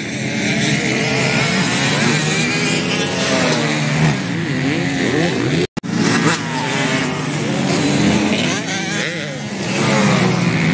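Motocross bike engines revving up and down as they are ridden around a dirt track, their pitch rising and falling repeatedly. The sound cuts out for an instant a little before six seconds in.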